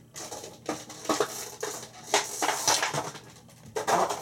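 Stiff plastic toy packaging crackling and clicking in irregular bursts as a small figure is worked out of it by hand.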